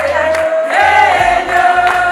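A group of women singing together in celebration, one sung line held and bending, over low notes that come and go in a repeating pattern.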